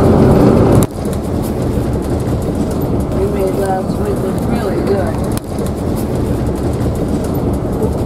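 Steady low rumble of road and engine noise inside the cab of a 40-foot Monaco diesel motor home cruising on the highway. The level drops abruptly about a second in and again a little past five seconds.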